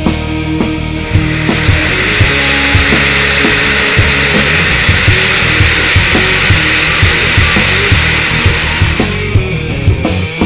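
Turboprop engine of a de Havilland Twin Otter jump plane running: a loud steady rush with a high whine that comes in about a second in and cuts off shortly before the end. Rock music with a steady drum beat plays underneath.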